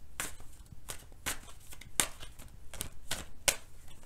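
A deck of tarot cards being shuffled by hand, in a run of sharp, uneven card flicks about two a second.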